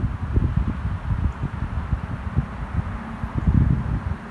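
Wind buffeting the microphone in uneven gusts, a low blustery noise that swells strongest near the end.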